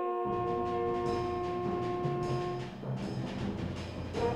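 School wind band playing: a sustained chord held over a timpani roll, the held notes dying away near three seconds in while the low drum roll carries on.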